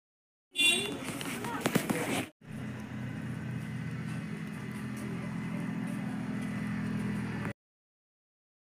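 Short stretch of voices with a few sharp knocks, cut off abruptly, then a steady low hum of a running vehicle engine that stops suddenly near the end.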